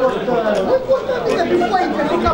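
Several people talking over one another: spectators' chatter close to the microphone, with no single voice standing out.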